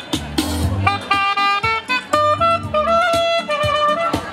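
Saxophone playing a jazzy melody over a backing of bass and drums, with longer held notes in the second half.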